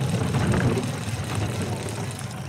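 Two-man bobsleigh sliding down the ice track: a steady low rumble of its steel runners on the ice.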